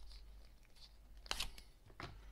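Quiet room hum with one short, sharp handling noise about a second and a half in, like a small object knocked or picked up off a table, and a couple of fainter clicks before it.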